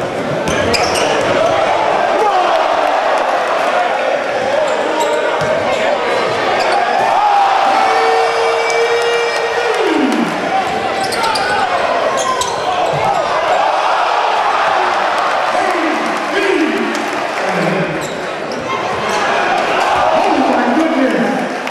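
Live game sound in a packed gym: crowd chatter and shouts over a basketball bouncing on the hardwood court. About eight seconds in, one long held shout falls off in pitch.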